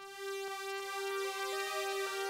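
Oberheim Matrix 1000 analog synthesizer string patch playing the bridge melody from a keyboard, a few held notes that swell in softly because of the patch's really slow attack.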